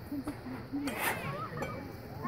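Background chatter of spectators' voices, several people talking at once, with one brief sharp sound about a second in.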